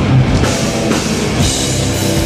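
A metallic hardcore band playing live at full volume: distorted electric guitars and bass over a pounding drum kit, with a cymbal wash swelling in the second half.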